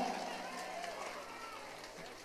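Faint murmur of distant voices from a seated outdoor crowd, over a steady low hum.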